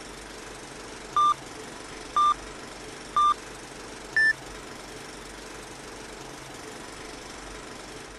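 Old-film countdown leader sound effect: four short beeps one second apart over a steady hiss, the first three at the same pitch and the fourth higher.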